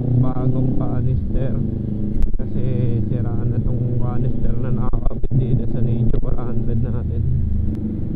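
Kawasaki Ninja 400 parallel-twin engine with an HGM aftermarket exhaust, running at steady low revs while riding, under a person talking.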